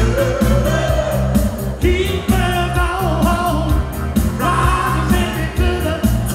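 A disco-soul vocal group singing live through a concert PA with a backing band: a lead voice over a steady bass beat, loud throughout.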